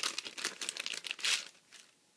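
Clear cellophane bag crinkling as a card of paper flowers is pulled out of it, a run of quick rustles that stops about a second and a half in.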